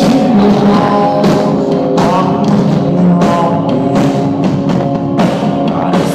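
A rock band playing live and loud: a singer over guitars, held notes and a steady drum beat, heard from within the audience.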